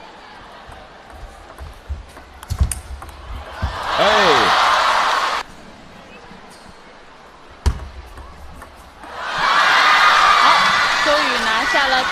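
Table tennis ball clicking off rackets and table in a rally, followed by a short burst of shouting and crowd noise. After a quiet stretch comes a single sharp ball hit, then crowd cheering and voices swell for the last few seconds.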